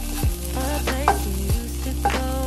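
Diced tofu sizzling as it fries in a nonstick wok, stirred and pushed around the pan with a wooden spatula. Background music with a deep beat plays underneath.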